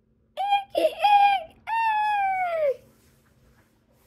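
A child's high-pitched wordless voice: a few short notes, then a long drawn-out note that slides down in pitch.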